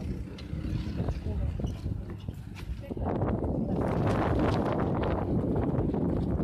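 Go-kart engines running at the track, with voices in the background; the noise gets louder and denser about halfway through.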